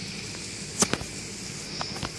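Steady outdoor background noise with two sharp clicks close together a little under a second in, and a fainter click near the end.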